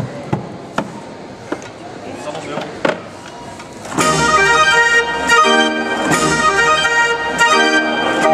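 A few sharp knocks, then a hand-cranked street organ starts playing abruptly about four seconds in: full sustained pipe chords and melody, with drum strokes from its built-in percussion.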